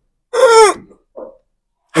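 A man's short vocal exclamation, a breathy 'aah' falling in pitch, with a faint murmur just after it.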